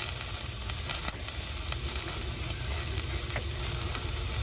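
Snails in their shells cooking in a stainless steel pot, the liquid bubbling and sizzling steadily. A couple of light clicks come about a second in and again after three seconds.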